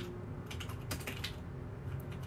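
Construction work going on outside the room: a steady low rumble with irregular light clicks and taps.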